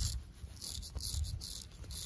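Straight razor scraping grey stubble off the neck in a quick run of short, raspy strokes.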